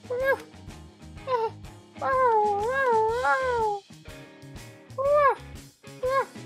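A voice imitating a cat's meows: several short rising-and-falling meows and one long wavering meow in the middle, over light background music.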